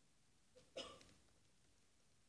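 Near silence, room tone, with one brief sound just under a second in.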